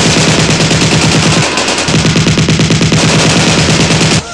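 Automatic rifle fire, two rifles fired at once: a long, rapid, continuous rattle of shots, broken by a short pause about one and a half seconds in, then resuming.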